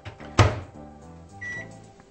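Microwave oven in use: a sharp clunk of the door or keypad about half a second in, a steady running hum, and one short high beep about a second and a half in. It is warming a milk-and-water mixture for a few more seconds.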